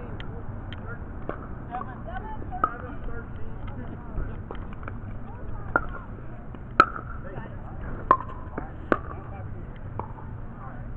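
Pickleball paddles hitting a plastic ball during a rally: a string of sharp hits, about one a second in the second half, the loudest about seven seconds in, over steady outdoor background noise.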